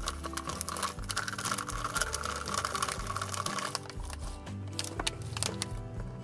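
Dense, rapid crackling clicks of a mouthful of roasted peanuts being crunched, with the crinkle of the plastic snack packet as they are tipped into the mouth. Background music with a steady beat about once a second runs underneath.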